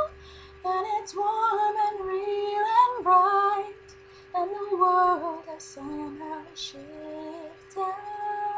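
A woman singing a slow, gentle melody in Rapunzel's voice, in several phrases with short breaths between, over a steady held note from backing music.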